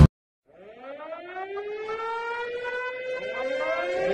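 A siren wailing, its pitch rising slowly and levelling off as it gets louder, starting about half a second in after a sudden silence; a second rising wail begins near the end.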